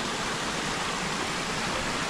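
Steady rush of flowing water in a hot-spring pool.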